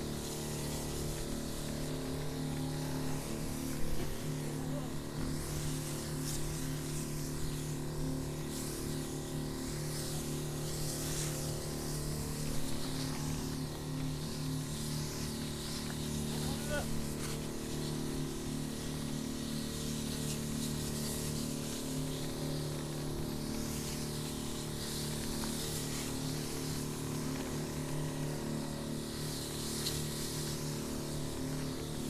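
A motorized sprayer running steadily with an even hum, and a hiss of spray from the metal lance that swells and fades as it is swept over the chili plants.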